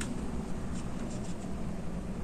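Soft rustling and a few light ticks of hands threading pom-poms onto a needle and thread, over a steady low hum.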